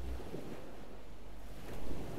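Ocean surf: a steady wash of breaking waves that swells louder briefly near the end.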